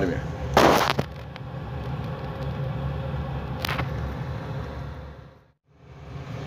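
Defro Sigma Uni 16 kW eco-pea coal boiler running with its door open: a steady low rumble from the burner's blower fan and flame. A short, loud burst of noise comes about half a second in and a weaker one near four seconds. The sound cuts out for a moment just before the end.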